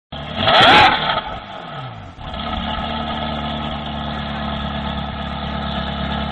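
Ferrari 360 Spider's 3.6-litre V8 blipped once: a sharp rev about half a second in that drops back over about a second, then idles steadily.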